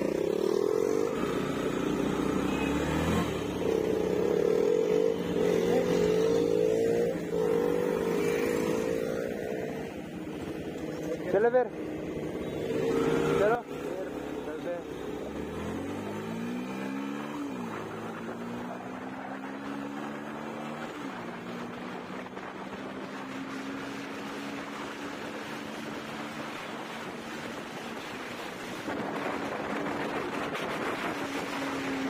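Motorcycle engine running as the bike pulls away and rides on. The pitch climbs and drops twice through gear changes, then settles into a steady cruise.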